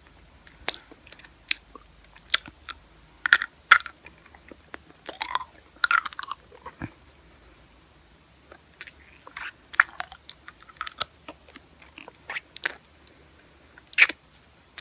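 Close-miked mouth sounds of sucking on a hard lollipop: irregular wet smacks and clicks of lips and tongue against the candy, coming in clusters with a short lull about midway.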